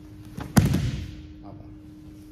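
A body thudding onto a grappling mat as a person is thrown to his back. One loud thud about half a second in, fading quickly.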